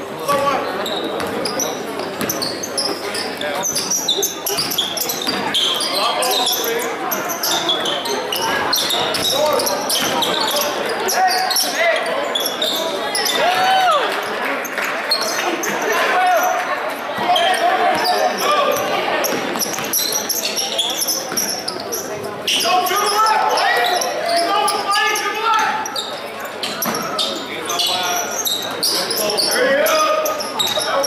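A basketball being dribbled on a hardwood gym floor during live play, mixed with indistinct shouting from players and spectators, echoing in a large gymnasium.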